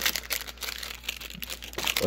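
Clear plastic shrink-wrap on a DVD case crinkling and tearing as it is handled and peeled off by hand, an irregular run of quick crackles.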